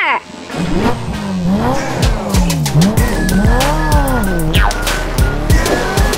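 A car engine revving sound, its pitch rising and falling several times, over background music with a steady beat.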